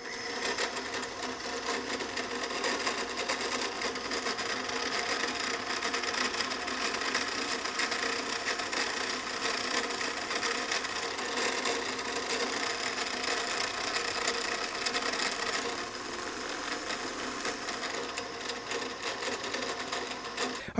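Drill press running steadily while a 3/8-inch Forstner bit cuts epoxy potting out of a BMW motorcycle tire-pressure sensor pushed up against it by hand. The sound eases a little about four seconds before the end.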